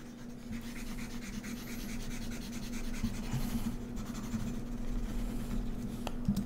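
Faint rhythmic rubbing of a pointing device being moved in small circles on a desk, about three strokes a second, over a steady low electrical hum.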